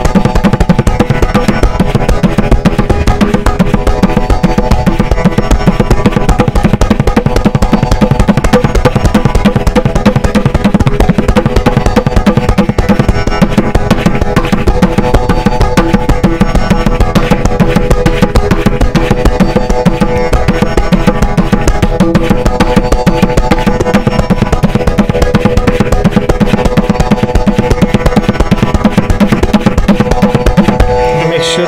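Tabla played continuously with both hands: a dense, unbroken run of rapid strokes on the right-hand dayan and left-hand bayan. The dayan rings at a steady pitch under the strokes.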